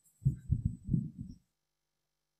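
A short run of low, muffled thumps, five or six in just over a second.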